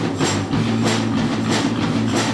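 Punk rock band playing live: bass and guitar held under drums, with cymbal and snare hits about three times a second.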